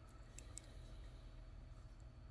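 Faint clicks of metal knitting needles touching as stitches are worked, two of them about half a second in, over a steady low hum.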